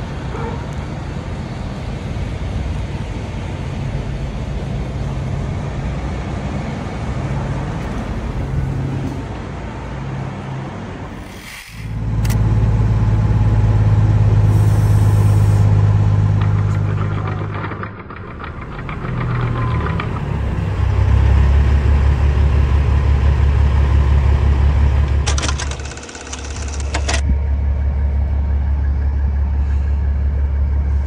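Heavy diesel truck engines running with a steady low hum. The sound changes abruptly three times where short clips are cut together, and the hum grows louder and deeper in the later clips.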